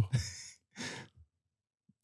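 A man's breath close to a handheld microphone: two short, breathy exhales like a sigh, about half a second apart.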